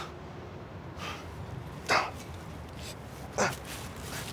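A man breathing out sharply in short, noisy huffs, the loudest about two seconds in and another about three and a half seconds in.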